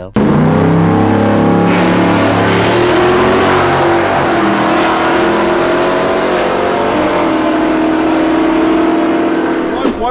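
Loud drag-racing car engine running at fairly steady, high revs. Its pitch drifts slightly up and down and settles onto a new steady note about seven seconds in.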